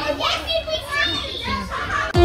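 A group of children talking.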